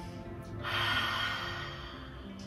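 A woman's breathy exhale through the open mouth, a drawn-out 'ha' sound lasting about a second. It starts about half a second in and fades away.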